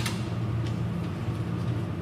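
A steady low electrical or mechanical hum, with a sharp click at the start and a few faint ticks as glass microscope slides are set down on blotting paper.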